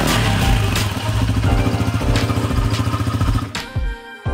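Honda PCX125 scooter's single-cylinder four-stroke engine running steadily through an aftermarket Yoshimura muffler, a fast even exhaust pulse, under background music. The engine sound stops about three and a half seconds in, leaving the music alone.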